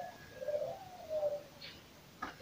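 A dove cooing: one low, soft call that rises slightly and falls away over about a second.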